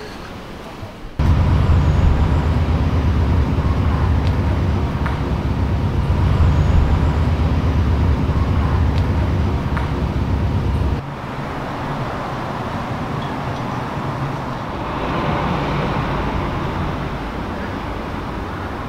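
Outdoor city traffic noise. A loud, steady low rumble of road vehicles starts abruptly about a second in and cuts off about eleven seconds in, leaving a quieter, even traffic hum.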